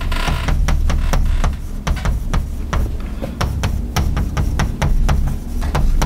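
Chalk tapping and scraping on a blackboard while writing: quick irregular clicks, several a second, over a steady low rumble.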